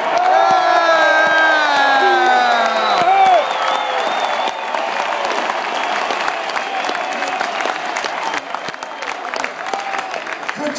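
Large stadium crowd cheering and applauding, with long drawn-out shouts from nearby fans for about the first three seconds, then steady applause and cheering.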